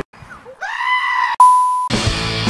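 A high-pitched scream rises in pitch and holds. About halfway through it cuts to a steady electronic beep tone, which stops suddenly just before the end.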